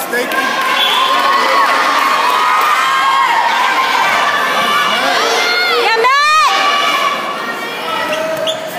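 Wrestling spectators shouting and cheering, many voices yelling at once. One voice shouts louder than the rest, rising and falling, about six seconds in.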